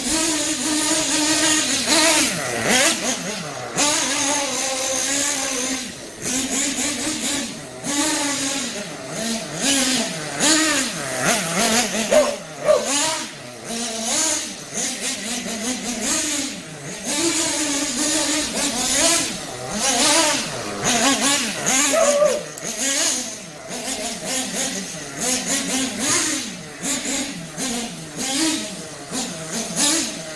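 Kyosho FO-XX GP nitro buggy's small glow engine, new and on its second tank of fuel, revving up and easing off over and over as it is driven, its pitch rising and falling every second or two with brief off-throttle dips.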